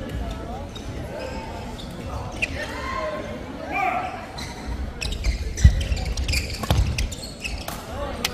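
Badminton play in an echoing sports hall: sharp racket strikes on a shuttlecock from about five seconds in, with short shoe squeaks on the court floor and voices in the background.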